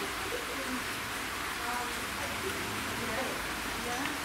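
Water running over a small river weir: a steady, even rushing hiss, with faint voices in the background.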